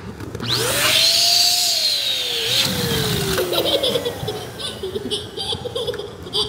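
Electric balloon inflator's motor starting with a quick rising whine and a rush of air, then its pitch sinking slowly over about three seconds as it winds down. Laughter follows.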